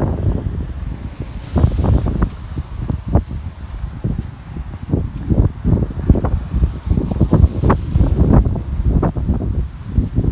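Wind buffeting a hand-held phone's microphone: an irregular low rumble in uneven gusts.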